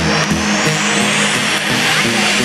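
Electronic dance music from a DJ set over a concert sound system, in a build-up: a noise sweep rises steadily in pitch over a repeating synth bass line.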